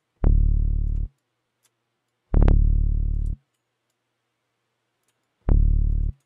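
Three bursts of a deep synthesized tone from Serum, each about a second long and fading. A granular glitch effect breaks each burst into rapid stuttering repeats. Faint mouse clicks sound between them.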